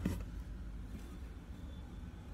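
Low steady hum of a styrofoam egg incubator's fan running.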